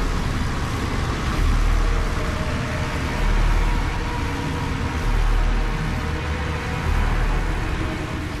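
A dark suspense soundtrack drone: a steady hissing rumble with deep, throbbing low pulses roughly every two seconds.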